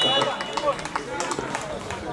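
Footballers' voices shouting and calling out on an outdoor pitch: the live field sound of an amateur football match just after a goal.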